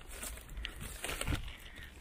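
Plastic snack packet of mixed nuts rustling and crinkling faintly as it is pulled out and handled, in a few irregular crackles.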